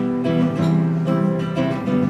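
Acoustic guitar strummed, playing a run of chords with the notes ringing on.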